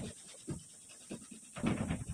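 Cloth rag rubbed over a painted sheet-steel cabinet door in short swishing strokes: a couple of light ones, then a louder stroke near the end.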